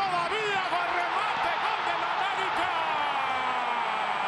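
TV commentator's long drawn-out goal call, one held shout slowly falling in pitch, over a cheering stadium crowd.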